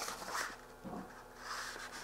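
Faint rustling of printed datasheet paper as a page is handled and turned, with a few soft clicks and a weak swell a little under a second in.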